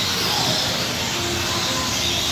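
Radio-controlled off-road racing trucks running on the track together, a steady high hiss of electric motors and tyres.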